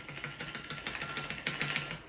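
Ice clicking and rattling inside a metal cocktail shaker as it is tipped to strain the last of a shaken drink into a glass: a rapid, irregular patter of small clicks.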